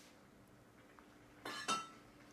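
A clear plastic food container knocking on a high chair tray as a toddler's hands dig into it: two quick clinks near the end, the second with a short ring.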